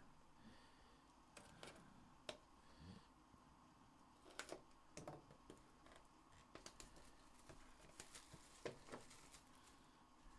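Near silence, with faint, irregular clicks and scrapes of fingers handling a sealed cardboard trading-card box and picking at its seal.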